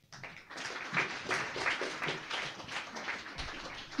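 Audience applauding, starting suddenly and continuing steadily as many quick claps.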